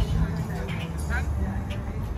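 Outdoor city ambience: a steady low rumble of traffic with scattered voices of people talking in the background.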